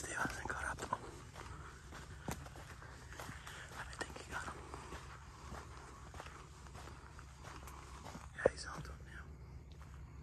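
Footsteps walking a sandy dirt trail, with hushed, whisper-like voice sounds that are loudest in the first second. A sharp knock comes about eight and a half seconds in.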